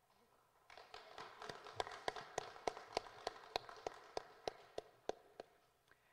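Scattered, faint applause from a few people, each clap distinct. It starts about a second in and dies away near the end.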